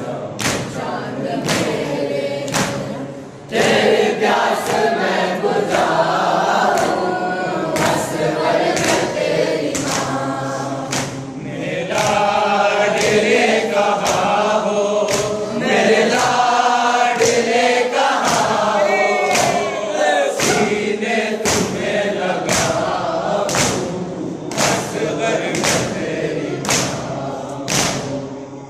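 A group of boys chanting an Urdu noha, a Shia lament, together in unison. Sharp claps of matam, hands striking chests, keep time about once a second.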